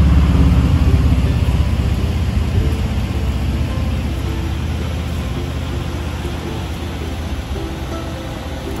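Low rumble of road traffic, loudest at the start and fading steadily, as of a vehicle going by and moving off.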